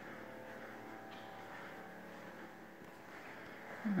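Faint room tone in an empty room: a steady low hum of several held tones under a light hiss, with no distinct events.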